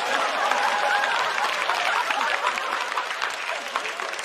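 Studio audience applauding, dying down toward the end.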